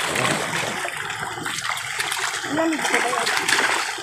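Milkfish thrashing and crowding at the surface of a fishpond during harvest, keeping the water splashing and churning steadily.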